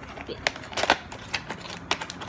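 Tape being peeled from a paperboard trading-card box as it is handled, giving several short, sharp crackles and clicks.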